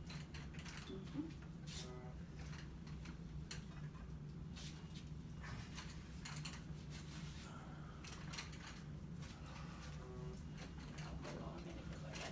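Faint scattered clicks and knocks of a walker's metal legs and shuffling steps on a hospital floor, over a steady low room hum.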